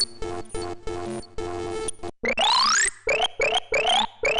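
Radio Active, a monophonic subtractive software synthesizer, playing electronic sound-effect presets. It starts with a steady-pitched pattern chopped into rhythmic pulses, then breaks off about two seconds in and comes back louder as a new preset of repeated rising pitch sweeps and stuttering pulses.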